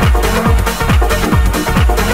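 Late-1990s trance music: a steady four-on-the-floor kick drum, about two beats a second, each kick dropping quickly in pitch, under sustained synth and bass tones.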